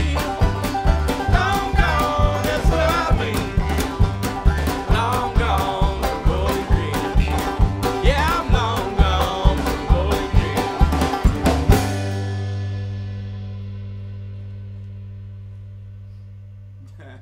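Bluegrass band playing live: banjo, upright bass and fiddle with a man singing and a harmonica, on a steady beat about two a second. The song stops sharply about twelve seconds in, and a low note rings on and fades.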